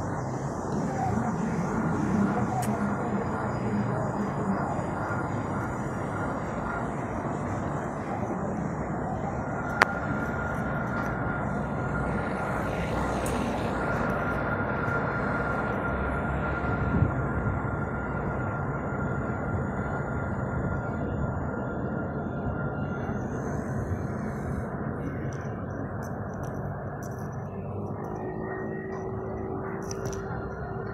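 Alstom Citadis low-floor tram passing close by on its rails, with a steady running rumble. A thin high electric whine rises out of it about a third of the way in and fades again a little past the middle. There is a sharp click about ten seconds in.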